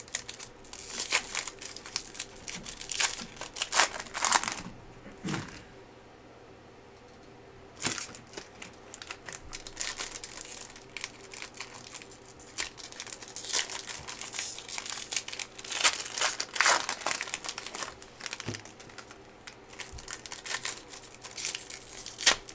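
Foil trading-card pack wrapper crinkling and tearing as it is opened and handled by hand, in irregular crackles with a quieter lull of a few seconds partway through.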